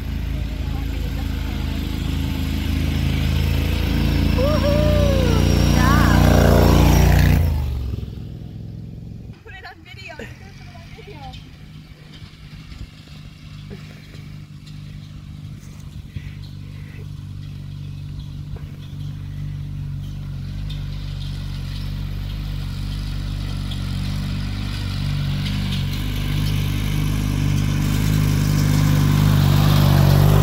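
Riding lawn mower engine on a modified mud mower running under load on a dirt hill climb, growing louder for the first several seconds, then dropping off suddenly about seven seconds in. After that the engine is quieter and slowly builds louder again toward the end as a mower comes close.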